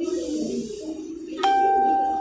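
A single bell-like chime note sounds suddenly about one and a half seconds in and rings on, slowly fading, over a low background of room noise.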